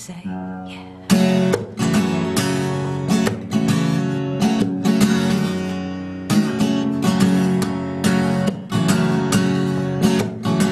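Guitar strummed as an instrumental passage: a chord rings and fades, then steady rhythmic strumming comes back in about a second in and carries on.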